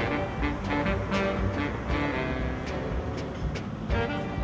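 Instrumental background music with held notes over light, regular percussion hits.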